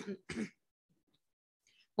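A woman clearing her throat: two short rasps in quick succession near the start, in a pause between chanted prayers.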